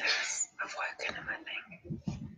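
A woman whispering in short breathy phrases.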